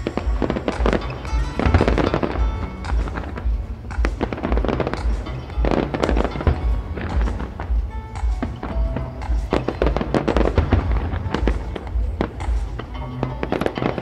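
Aerial fireworks bursting in rapid, overlapping bangs and crackles, with music playing underneath.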